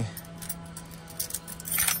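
Car keys jangling briefly near the end, after a few faint clicks.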